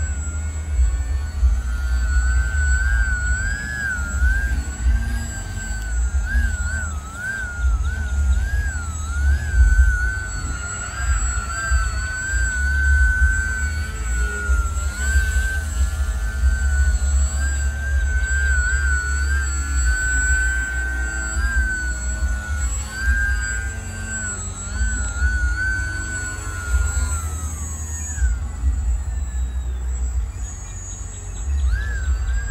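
RC Fokker triplane model's motor and propeller: a high whine that wavers up and down as the throttle is worked through hovers and passes, gliding down near the end as the power comes off. A low rumble runs underneath.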